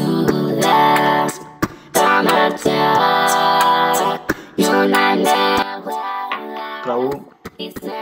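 Playback of a home-made song sung through the Voloco autotune app: vocals with hard pitch correction that hold flat notes and jump between them, over an instrumental backing.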